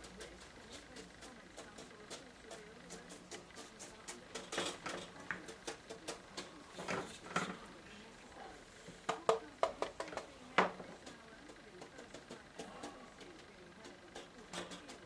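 Irregular light taps and clicks of a watercolour brush dabbing paint onto paper and working against the palette. The taps come in small clusters with short gaps between them.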